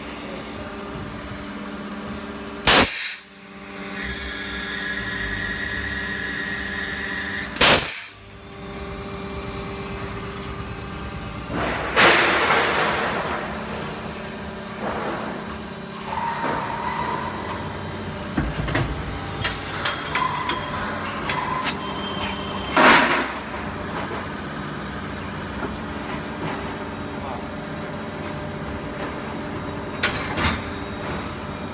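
Preform injection moulding machine with a 24-cavity shut-off nozzle mould running through its cycle: a steady machine hum, two loud sharp clunks about five seconds apart near the start, and later a burst of noise that fades over about two seconds, with scattered clicks and knocks and another loud clunk near the end.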